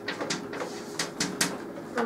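Chalk writing on a blackboard: a handful of short, sharp taps and scratches as a word is written out.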